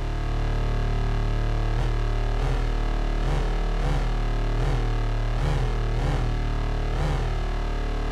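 Lightsaber-style hum from a Novation Peak analog synthesizer: a steady low buzz of detuned sawtooth oscillators. From about two seconds in, the pitch swings up and back roughly every three-quarters of a second as the mod wheel is rocked, imitating a saber being swung.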